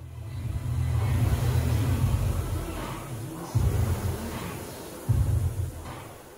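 A Concept2 rowing machine's fan flywheel whooshing and rumbling during a hard piece, the whoosh rising and falling with each stroke, with music playing in the background.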